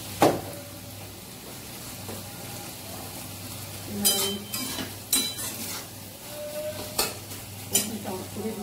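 Long metal spatula stirring okra and potatoes frying in a metal kadai, with a low sizzle and a steady low hum beneath. A sharp click comes just after the start, and the spatula knocks against the pan several times in the second half.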